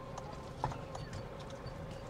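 Faint sharp taps or clicks, about two a second, over a steady low rumble.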